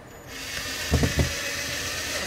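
Cordless drill driving a drywall screw through a 3D-printed plastic bracket into drywall: a steady motor whir lasting about two seconds, with two low knocks about a second in.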